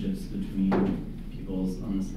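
A man speaking into a handheld microphone, with one brief knock-like sound about two-thirds of a second in.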